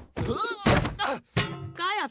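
Cartoon soundtrack: a loud thunk about two-thirds of a second in as a character dives, with short grunting vocal sounds and a brief music cue.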